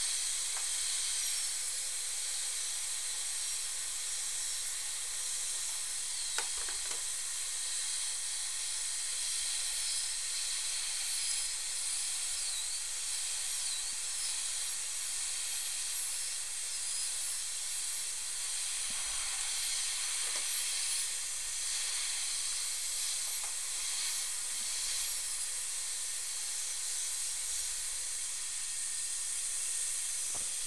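High-speed dental air-turbine handpiece with a chamfer bur, running with its water spray while cutting a crown preparation. It gives a steady high hiss, with a faint high whine that dips and rises in pitch now and then.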